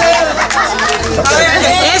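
Overlapping voices of a small crowd chatting at once, over background music with steady low bass notes.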